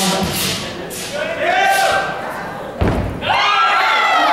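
A single heavy thud about three seconds in: a wushu athlete's body hitting the carpeted competition floor as he drops to the ground. Voices of onlookers calling out can be heard around it, rising right after the impact.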